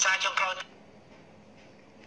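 A man speaking in Khmer for about half a second, with a telephone-like, narrow sound, then cutting off into a pause of faint steady background hiss.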